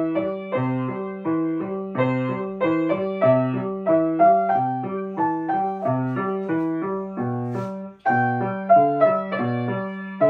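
A grand piano plays an evenly paced piece with a repeating bass line under a melody. The playing breaks off for a moment about eight seconds in, then carries on.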